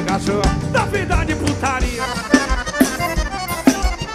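Forró band playing an instrumental passage: an accordion melody over a steady kick-drum beat.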